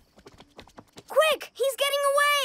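Soft, quick cartoon footsteps clicking for about a second, then a child character's wordless vocal sound, a rising-and-falling 'hmm'-like utterance, which is the loudest thing.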